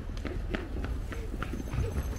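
Footsteps on hard pavement: quick, sharp steps several times a second over a steady low rumble.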